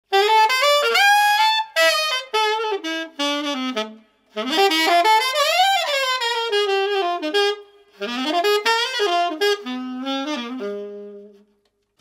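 Keilwerth EX90II alto saxophone played solo in three melodic phrases with short breaks between them. The middle phrase sweeps quickly up and back down in pitch, and the last phrase ends on a long low note that fades out.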